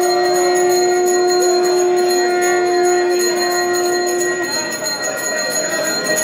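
Temple bells ringing continuously during an aarti, over a long steady held note that stops about four and a half seconds in.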